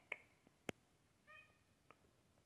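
A seal point Ragdoll cat gives one short, quiet mew a little past the middle, amid a few faint clicks.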